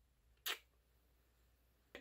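Near silence broken by a single short, sharp click about half a second in.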